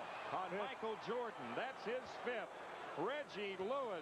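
Old TV basketball broadcast sound: a play-by-play commentator talking over a steady background of arena crowd noise, at low volume.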